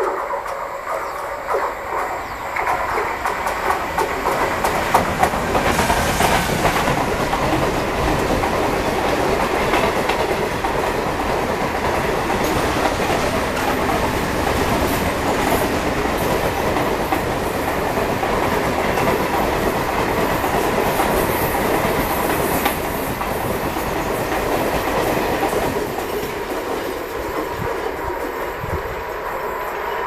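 Container freight train passing close by, its wagon wheels running over the rails in a steady rumble. The sound builds over the first few seconds and falls away near the end as the train moves off.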